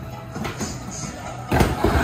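Skateboard dropping in on a plywood mini ramp: a single sharp slap of the wheels onto the wood about a second and a half in, over background music.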